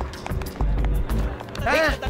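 Comedy film soundtrack: background music with heavy low thuds and sharp ticks, then a short cry near the end whose pitch rises and falls.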